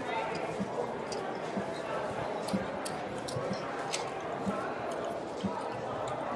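Casino table din: a steady murmur of background voices with scattered short clicks of casino chips and cards being handled on the felt.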